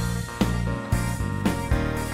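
Instrumental background music with a beat.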